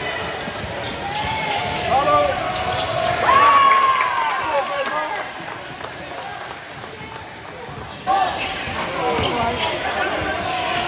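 Live basketball game sound on a hardwood court: a ball dribbling, sneakers squeaking in short sharp bursts, and players' voices calling out. The squeaks cluster in the first half and come back with a sudden rise in loudness near the end.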